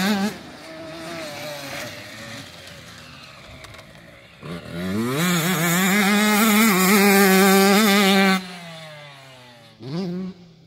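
Motocross bike engines on the track: one passes close at the start and fades into a fainter engine running further off. About four and a half seconds in, a bike accelerates with rising pitch and runs loud with a warbling note for about three seconds, then drops off sharply, its pitch falling as it moves away.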